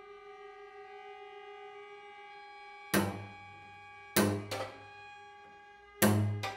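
String quintet of two violins, viola and two cellos: a single held bowed note sounds for about three seconds. It then gives way to three sudden, loud percussive string attacks, one about halfway through and two close together near the end, each ringing briefly.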